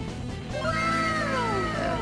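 Background music with steady sustained notes, and from about half a second in a single long drawn-out call that rises slightly and then falls in pitch, lasting about a second and a half.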